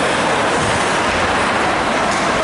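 Steady, loud din of an indoor ice hockey rink during play, an even rush of noise with no single event standing out.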